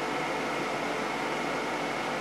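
Steady running noise of a solar air-heating system's blowers, a large in-line fan together with smaller DC fans, with a few faint steady tones in it.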